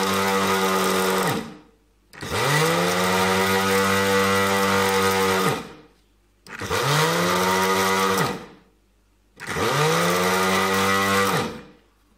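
Small electric grinder's motor grinding oats to powder, run in short pulses. It is running at the start, stops, then starts three more times for two to three seconds each, its whine rising as it spins up and falling away as it stops.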